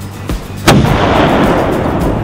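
Cannon-fire sound effect: a single boom about two-thirds of a second in, followed by a crackling, rumbling tail that fades over about a second, laid over background music.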